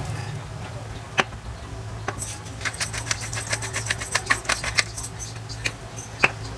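Hand-twisted pepper grinder cracking peppercorns: a rapid, irregular run of short dry clicks that starts about two seconds in and lasts some three seconds, over a steady low hum.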